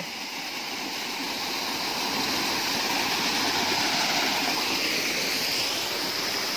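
Steady rush of a jungle waterfall and its stream, an even hiss of falling and running water that swells a little toward the middle.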